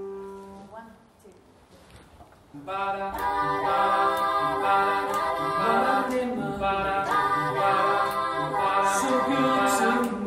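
A small mixed group of men and women singing together a cappella, starting about two and a half seconds in. A held note fades out in the first second, before the singing.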